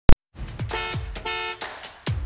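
A sharp, very loud click, then the opening of a newscast traffic-report stinger: an electronic beat with deep kick-drum hits and two car-horn honks about half a second apart.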